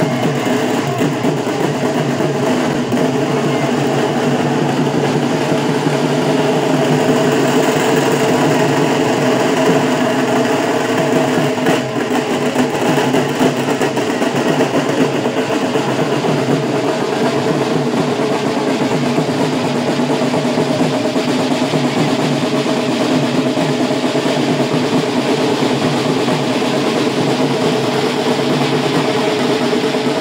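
Loud procession music with drumming, running steadily without a break.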